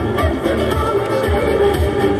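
Upbeat dance music with a steady beat playing over a public-address loudspeaker.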